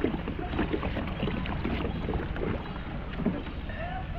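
Water splashing and sloshing around a paddled kayak in irregular bursts, with wind rumbling on the microphone.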